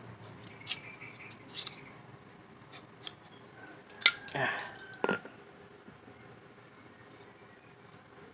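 Metal clicks and scrapes from handling a Polytron washing machine's spin-dryer motor as its wound stator is worked out of the steel housing. The loudest is a sharp click about four seconds in, followed by a short scrape and another click.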